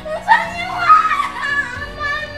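A high-pitched voice speaking loudly over background music, loudest about a third of a second in and again about a second in.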